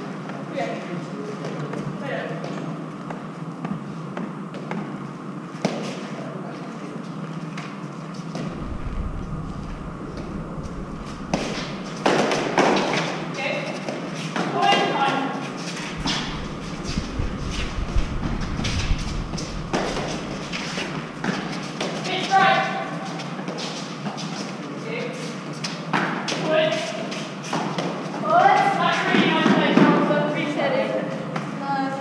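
Eton Fives rally: the hard fives ball struck with padded gloves and knocking off the concrete court walls and floor, many sharp knocks that come thicker in the second half. Players' voices call out briefly several times between the shots.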